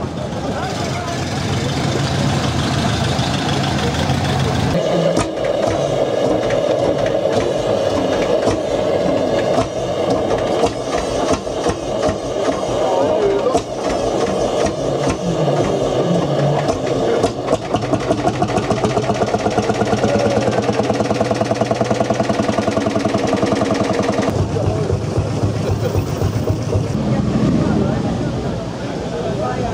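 Lanz Bulldog tractor's single-cylinder two-stroke engine running with a steady beat of exhaust pulses, with voices in the background. The engine sound starts about five seconds in and stops a few seconds before the end.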